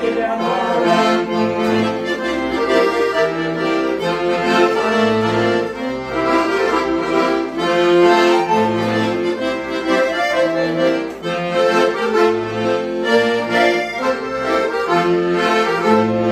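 Two piano accordions playing together in an instrumental passage of a traditional gaúcho tune, sustained chords and melody over a bass line that moves every second or two.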